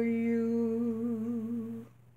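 A woman's voice holding one long, low sung note with a slight waver, fading and stopping just before the end.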